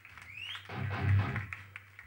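Amplified electric guitar noise from the stage between songs: a short rising squeal, then a low note that rings for about a second and fades.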